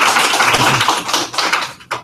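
Audience applauding to welcome a speaker, the clapping dying away near the end.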